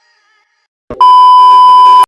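Background music fading out, then a brief thump and a loud, steady electronic beep, one high tone that starts suddenly about a second in and holds for about a second.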